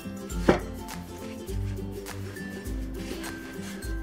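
Background music with sustained notes and a slow steady beat. About half a second in there is a single sharp pat as hands press a paper towel onto a salmon fillet on a wooden cutting board to dry it.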